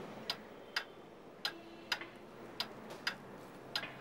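Clock ticking: sharp, regular clicks a little under two a second, in an uneven tick-tock rhythm.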